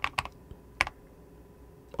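Computer keyboard being typed on: a few quick keystrokes in the first half-second, then one sharper keystroke just under a second in.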